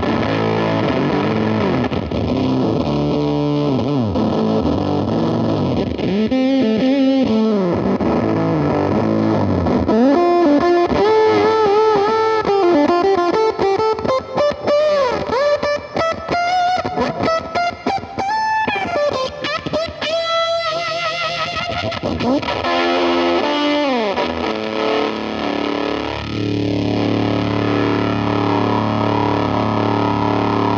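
Electric guitar played through the Chase Bliss Audio / Benson Amps Preamp MkII overdrive pedal with its fuzz switched on and gated, giving a heavily distorted tone. Chords and single notes are played, with notes gliding in pitch in the middle, and it ends on a held chord.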